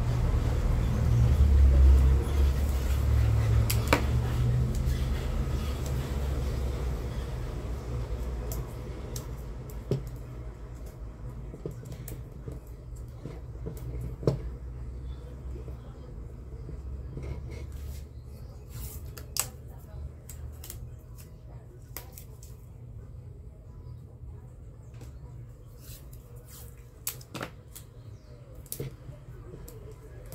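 Small clicks and handling noises of black electrical tape being wrapped around a clothes-iron power cord at a splice, over a low rumble that slowly fades away during the first half.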